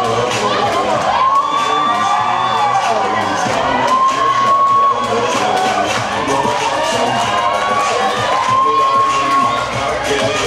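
Crowd cheering and shouting, with music playing underneath.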